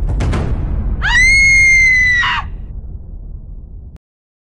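A shrill scream sound effect, held on one high pitch for about a second and a half, over a deep dramatic music bed that fades out afterwards.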